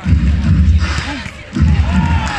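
A sports commentator's voice over a loud low rumble that comes in two stretches, one at the start and one near the end.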